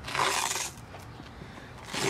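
A Velcro strap ripped open once, a short tearing noise of about half a second, unfastening the strap that holds a battery pack in its bag.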